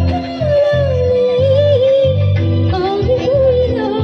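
A woman singing a long, ornamented melody line into a microphone over an amplified backing track with a steady bass beat, through a stage PA.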